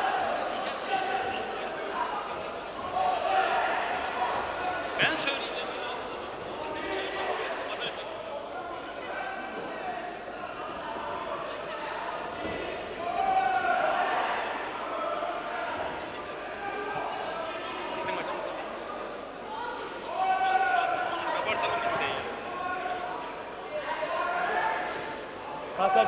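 Kickboxing bout in progress: gloved punches and kicks landing and feet thudding on the ring canvas at intervals, with a few sharp cracks about 5, 20 and 22 seconds in. Voices shout from the corners and ringside throughout.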